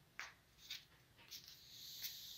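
Near silence: room tone with a few faint, brief scuffs.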